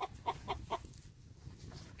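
Laying hen clucking: a few short clucks in the first second, then fainter ones.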